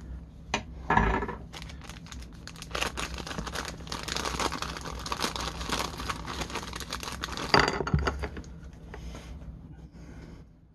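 A small clear plastic bag crinkling and tearing as it is opened by hand and a plastic part is worked out of it. The rustling is dense from about a second in and thins out near the end.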